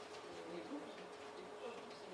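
Faint room tone with a quiet, steady hum.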